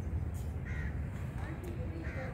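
A bird calling briefly, a short harsh call about two-thirds of a second in, with a fainter call near the end, over a steady low rumble.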